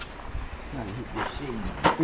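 A person's voice making a few short sounds with rising and falling pitch, over a steady low rumble, with one sharp knock just before the end.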